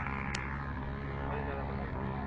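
Engine of a dune-bashing car running at a steady pitch, with one sharp click about a third of a second in.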